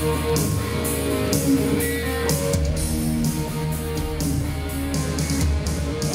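Live rock band playing through an arena PA: a Les Paul-style electric guitar over bass and drums, heard loud and steady from the crowd.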